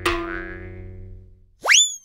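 Cartoon sound effects: a struck ringing tone that dies away over about a second and a half, then a quick rising boing-like whistle near the end, the loudest part, which tails off slightly downward.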